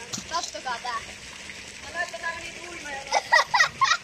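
Young voices talking over a steady hiss, rising to loud excited shouts about three seconds in.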